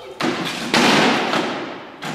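Dog-agility teeter-totter plank banging down as the dog tips it: a knock, then a louder bang about half a second later that rings and fades over about a second.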